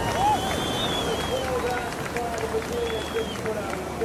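Steady rush of breaking ocean surf, with faint voices in the background.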